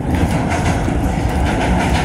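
Loud, steady rumble of a passing train.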